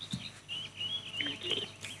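Faint bird chirping, a run of short wavering high chirps, coming over an open telephone line with no one speaking on it.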